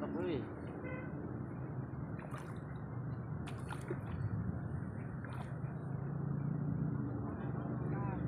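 Hooked tilapia splashing briefly at the pond surface a few times as it is played on the line, over a steady low hum.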